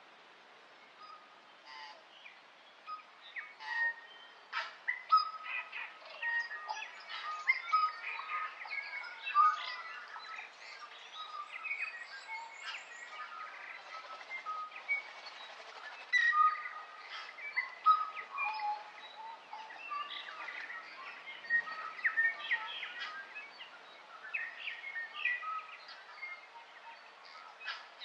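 Several birds chirping and whistling together in a busy chorus of short notes at many different pitches. It builds up from near quiet over the first few seconds, then stays dense.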